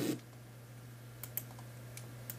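Two faint clicks in quick succession about a second in, from operating a computer to pause and rewind a video, over a low steady hum.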